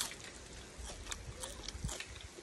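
Close-up chewing of crispy pakoras, heard as irregular faint crunches and mouth clicks against a low rumble.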